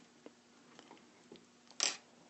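Faint clicks of small plastic printer parts being handled, then near the end a short, louder scrape as the removed fan and fan shroud are set down.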